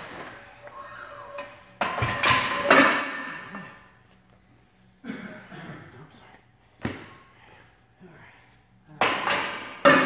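Ivanko 45-pound metal weight plates clanking and ringing as they are pulled off the barbell and handled. There are loud metallic clanks about two seconds in and again near the end, with a single sharp knock in between.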